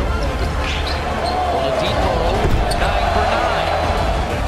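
Basketball game audio: a ball dribbled on a hardwood court amid arena crowd noise, with a steady low bass underneath.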